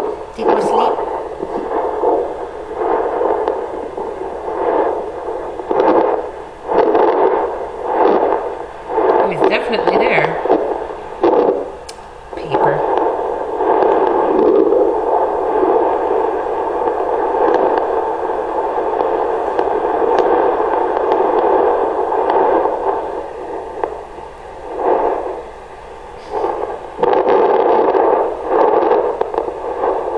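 Handheld fetal Doppler's loudspeaker giving a loud, steady static hiss, with scratchy crackles and sweeps as the probe is moved over the pregnant dog's gelled belly in search of the puppies' heartbeats; the scratching is busiest in the first half, then the hiss steadies.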